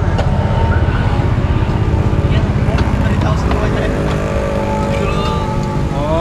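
Road traffic going by: a steady low engine rumble, with a vehicle speeding up near the end. Voices in the background.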